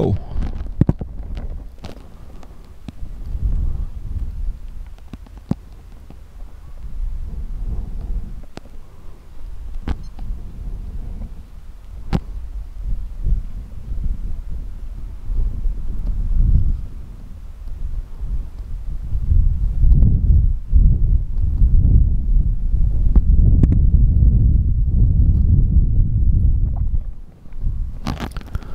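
Gusty wind buffeting the microphone, a deep rumble that swells and fades and is loudest over the last third.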